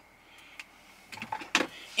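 Quiet car-cabin background with a few short, faint clicks in the second half.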